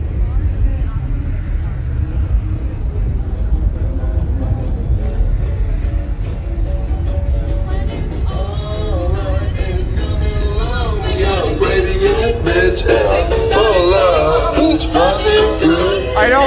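Car audio systems playing music with heavy, steady bass. About halfway through, a song with a sung vocal line grows louder and becomes the loudest sound.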